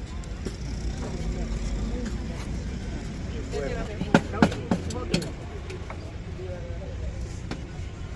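Four sharp metallic clicks about four to five seconds in, serving utensils knocking against a street food stall's steel tray and grill, over a steady low traffic rumble and faint voices.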